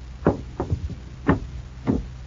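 Radio-drama sound effects of a visitor being let in: a series of sharp, unevenly spaced knocks and thumps, footsteps going to the door and the door being opened.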